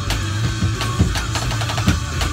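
Rock song with guitar, bass and drums playing at a steady beat, with a practice drum-pad kit played along in time.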